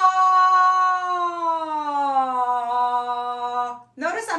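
A woman singing one long sustained 'ah' that slides slowly down in pitch, a vocal warm-up scoop downward through her range, stopping just before the end.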